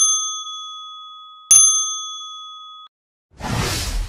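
Intro sound effect: a bright, bell-like ding, with a second ding about a second and a half in. The ringing fades and stops abruptly near three seconds, followed by a short whoosh near the end.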